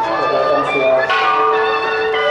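Ringing bells and music with many long held pitched notes, with a bright ringing strike about a second in, over a crowd's voices.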